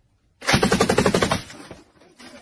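A close burst of machine-gun fire used as anti-aircraft fire: rapid shots, about a dozen a second, start about half a second in, go on for about a second, then die away.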